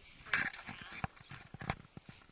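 Dog digging into a rabbit burrow: its paws scrape and thud in the soil in an uneven run, with a few sharper knocks.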